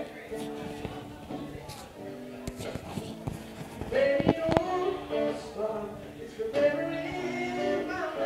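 Acoustic guitar strummed with a male voice singing to it. The voice comes in louder about four seconds in and again near the end.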